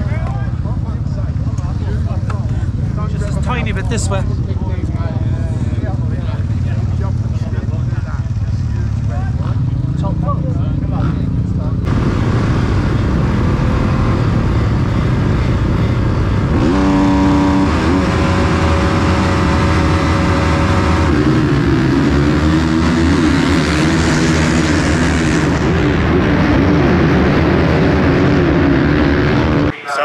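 Motocross bike engines running loudly, heard close up; about twelve seconds in it changes to a single bike on the track, its revs rising and falling.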